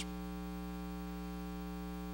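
Steady electrical mains hum, a low even buzz that holds at one level and one pitch throughout.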